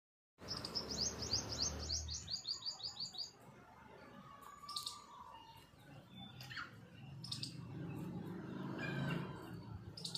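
Small bird chirping: a fast run of high, falling chirps, about ten a second, for the first three seconds, then single chirps now and then.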